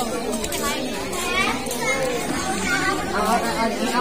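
Overlapping chatter of a small group of adults and children talking over one another.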